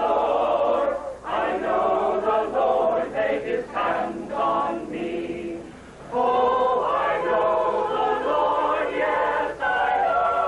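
Mixed choir of men's and women's voices singing. The singing falls quieter shortly before the middle and comes back at full strength about six seconds in.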